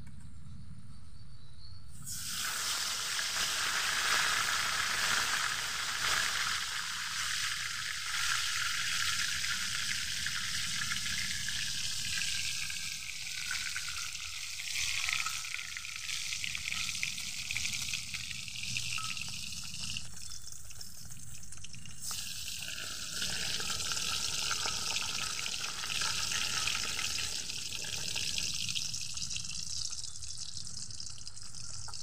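Fish frying in hot oil in an aluminium wok, a dense sizzling that starts suddenly about two seconds in as the fish goes into the oil, with a short dip and change a little past the middle.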